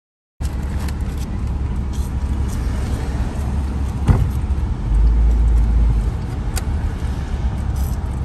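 Road and engine noise inside a moving car's cabin: a steady low rumble that begins suddenly after a moment of silence and swells for about a second past the middle, with a few light clicks.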